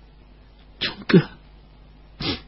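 A person's sharp intake of breath a little under a second in, followed at once by a brief vocal sound falling in pitch. These are breath and voice sounds between lines of narration.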